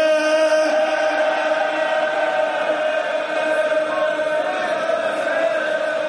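Shia mourning chant sung by a congregation of men in unison, holding one long, steady note.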